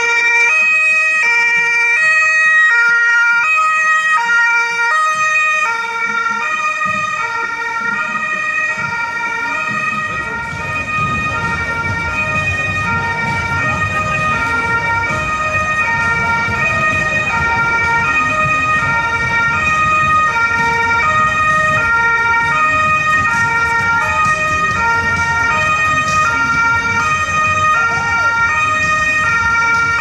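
German two-tone emergency siren (Martinshorn) on a Johanniter Mercedes rescue ambulance, sounding on an emergency run and alternating steadily between a low and a high tone, each held under a second. A low rumble of vehicle and street noise joins about a third of the way in.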